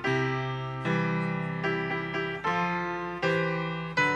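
Slow solo piano music: chords struck about every 0.8 seconds, each left to ring and fade before the next.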